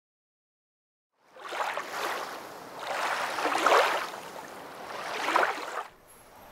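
Rushing, surf-like noise in three rising-and-falling swells, like waves washing in. It starts after about a second of silence and cuts off abruptly at the end.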